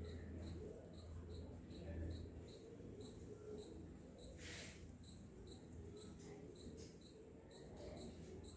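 A cricket chirping steadily, about two to three short high chirps a second, over a faint low hum, with a brief rustle about halfway through.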